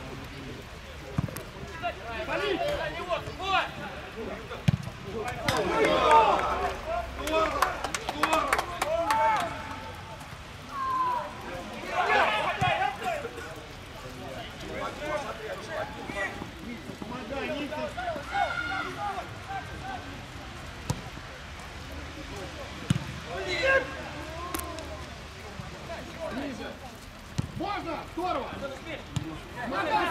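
Voices of footballers and spectators calling and shouting across an outdoor pitch during play, with a few sharp thumps of the ball being kicked.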